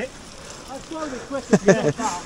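Men's voices, mostly laughter, loudest in the second half, over a low steady hiss.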